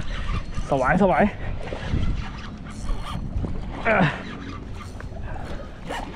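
A hooked fish splashing at the water's surface as it is reeled in close to the bank.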